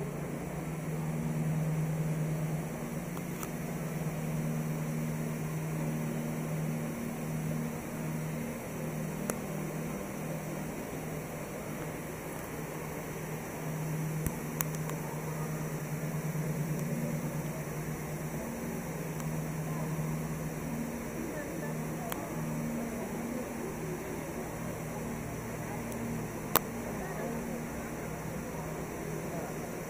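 Busy indoor mall ambience: a crowd chattering with a steady low hum underneath and a few sharp clicks, the loudest near the end.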